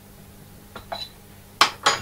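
Hard objects being handled on a workbench: a faint clink about a second in, then two sharp clicks close together near the end.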